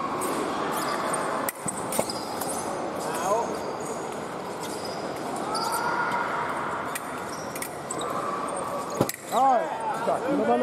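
Foil fencers' quick footsteps thudding on the piste, with sharp clicks of blade contact a couple of times early on and again near the end. Right after that last click a fencer shouts, with voices echoing in a large hall throughout.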